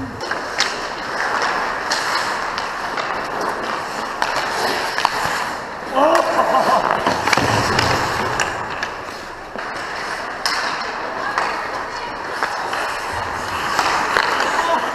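Ice hockey skates scraping and carving on rink ice, with scattered sharp knocks of sticks and puck. A player's shout about six seconds in, as play crowds the net and the sound grows louder for a couple of seconds.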